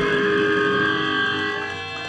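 Amplified electric guitars ringing out with sustained notes and feedback tones, without drums.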